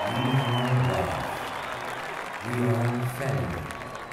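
Large stadium crowd applauding, with a deep male narrator's voice over the public address speaking two slow, drawn-out phrases above it.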